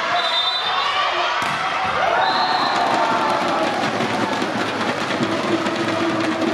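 Spectators shouting and cheering in a sports hall during a volleyball rally, with brief high sneaker squeaks on the court floor. In the second half, rapid beating and a held horn-like note from a cheering section start up.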